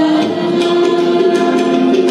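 A group of young voices singing together in long held notes, accompanied by harmonium, tabla and violin. The sung pitch shifts twice.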